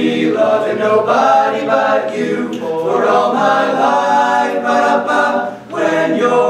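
A cappella group of eight teenage boys singing in harmony, with no instruments. Near the end the voices break off briefly, then come back in together.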